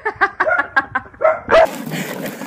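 A rapid series of short, high-pitched yelping cries, about six a second, the last one the loudest about one and a half seconds in.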